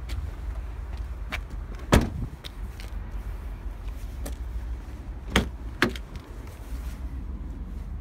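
Several sharp knocks and clicks from a car's tailgate and doors being handled, the loudest about two seconds in and another about five and a half seconds in, over a steady low rumble.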